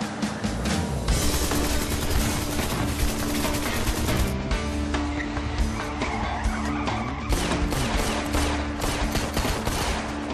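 Rapid, repeated pistol shots in a drive-by exchange of fire from a car, with the car's engine running underneath and tense dramatic music throughout.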